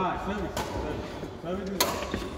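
Badminton rackets striking a shuttlecock during a rally: two sharp hits, a lighter one about half a second in and a loud crack near the end.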